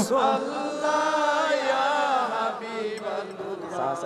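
Male congregation chanting a devotional phrase in unison in reply to the preacher's call: a drawn-out melodic chant that slowly fades.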